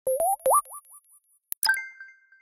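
Electronic logo-intro sound effect: two quick upward-sliding blips that echo away, then a sharp click and a bright chime that rings out and fades.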